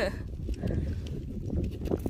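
Fingers scraping and picking through loose gravel, with a few small clicks of stones, over a low steady rumble.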